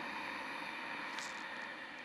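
A woman's slow, steady inhalation, one long breath in lasting about three seconds and fading near the end: a controlled, paced yogic breath. A faint tick about a second in.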